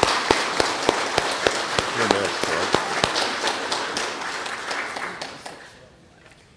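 Church congregation applauding, a dense patter of many hands clapping that dies away near the end.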